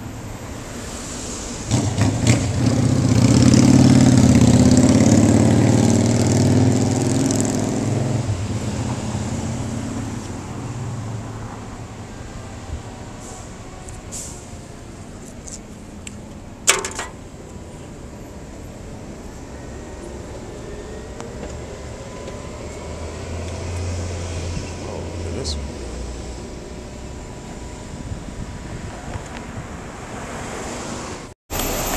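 A motor vehicle engine grows loud about two seconds in, peaks, then fades away over the next several seconds. A sharp click comes about halfway through, and a quieter low engine hum follows later.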